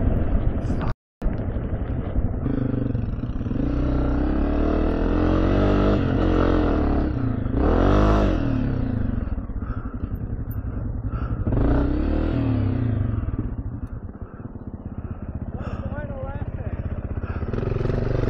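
Single-cylinder four-stroke Honda dirt bike engines running, their pitch rising and falling with the throttle. One engine surges up and back down about eight seconds in, and another revs up around twelve seconds. The sound cuts out completely for a moment about a second in.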